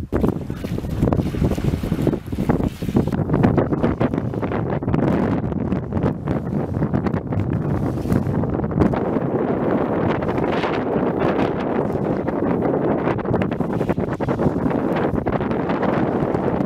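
Wind buffeting the microphone: a steady, loud rushing noise with irregular gusty flutter throughout.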